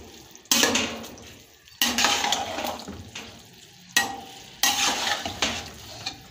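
A perforated metal spoon stirring and scraping through wet, steaming rice in a large metal pot. There are about five strokes, each starting sharply and fading away.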